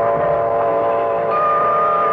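Small swing jazz group playing live, holding sustained notes that form chords, with a new high note entering about a second and a half in. Heard on an amateur tape recording with dull, cut-off highs.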